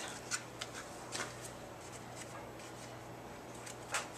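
Faint crinkling and small ticks of seasoning packets being handled and shaken out, with a sharper crinkle near the end, over a low steady hum.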